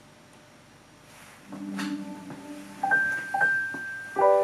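Google Home smart speaker playing its start-up chime after being powered on: about a second and a half in, a low held tone, then a few bright chime notes and a held high note.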